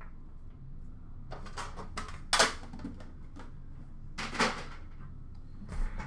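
Hockey card tins and their cardboard case box being handled on a counter: a few soft rustles and scrapes, with a sharper knock or scrape about two and a half seconds in and another about four and a half seconds in.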